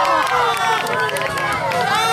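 Several children's voices shouting and squealing at play, with long drawn-out cries that slide slowly in pitch and overlap one another.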